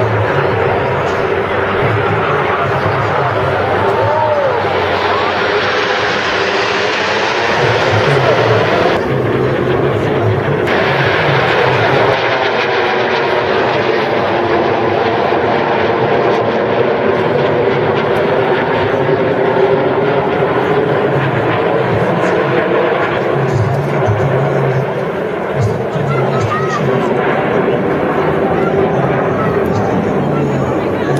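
Turbojet engines of the Frecce Tricolori's Aermacchi MB-339 PAN jets flying over in formation, a loud steady roar.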